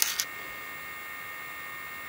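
Steady electrical background hum with faint thin whining tones, and a brief sharp sound right at the start.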